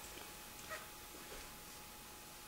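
A few faint, short, high squeaks that sound like a mouse.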